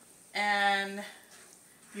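A woman's voice holding one drawn-out filler sound at a steady pitch, like a long "um", for a little over half a second; otherwise quiet.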